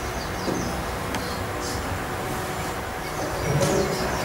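Steady background rumble and hum of a room, with a few faint brief sounds over it and a slight swell about three and a half seconds in.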